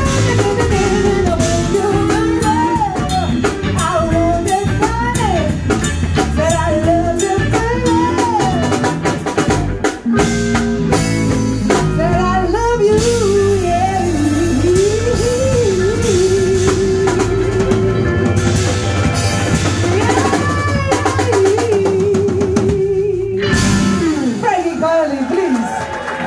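Live blues band playing: a woman singing lead over electric guitar, bass guitar and drum kit, with long held sung notes, the last with vibrato, near the end.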